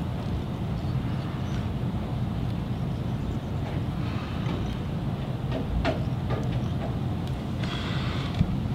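Steady low rumble of background room noise, with a few faint ticks about six seconds in.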